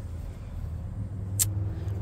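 Low, steady rumble in the cabin of a parked Mazda CX-50, growing a little stronger after about a second, with a single sharp click about one and a half seconds in.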